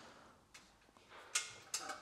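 Quiet room tone for about a second, then two short breathy hisses in the second half, from a person's breathing.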